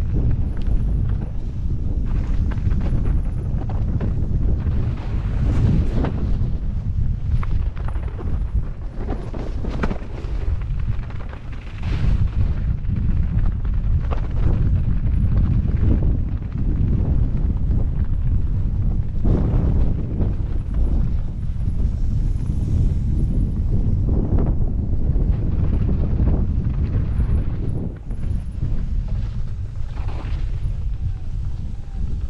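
Wind buffeting the helmet-mounted camera's microphone over the low rumble of a mountain bike ridden fast downhill over rough grass and snow, with irregular knocks and clatters as the bike hits bumps.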